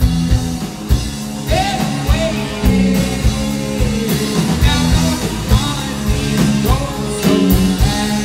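Rock band playing live: electric guitars, bass and drum kit with a steady beat, and a man's lead vocal coming in about a second and a half in.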